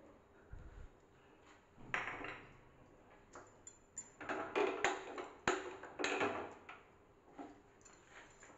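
An aluminium saucepan clinking and knocking on a steel gas stove as kitchen utensils are handled: a few separate clinks with some ringing, then a busier run of knocks. A single sharp click comes about five and a half seconds in.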